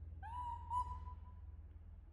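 Newborn baby monkey giving one high coo call for its mother: a rising, whistle-like note that breaks for a moment and then trails off, about a second long.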